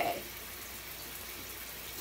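Steady hiss of running water in a tiled shower, with no change in level.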